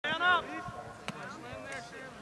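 A loud raised voice in the first moment, then fainter voices. A single sharp click about a second in.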